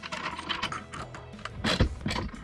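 Light metallic clicks and clinks of a steel washer and nut being fitted onto a bolt through a strut-channel bracket, the sharpest click near the end, over a background music bed.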